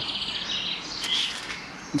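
A small songbird singing a rapid, high trilling chirp that fades out after about a second and a half, with a single faint click about a second in.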